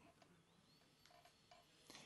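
Near silence: room tone with a few very faint, short tones.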